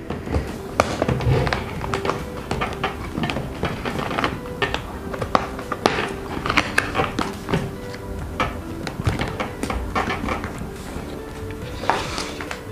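Background music, over irregular clicks and taps of the foam cheek pads being pulled out of a KYT NX Race Carbon motorcycle helmet.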